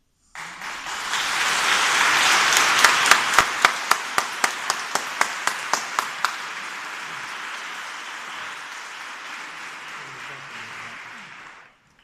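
A congregation applauding: the applause swells over the first couple of seconds, with loud single claps close by, about four a second, for a few seconds, then slowly dies away near the end.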